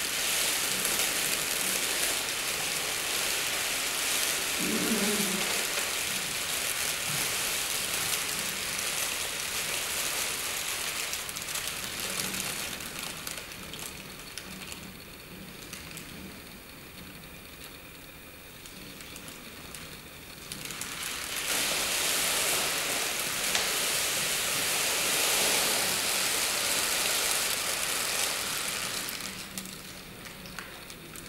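Crumpled paper sheeting crinkling and crackling as it is moved and dragged, a dense rustle that eases in the middle and swells again later. A short low pitched sound comes about five seconds in.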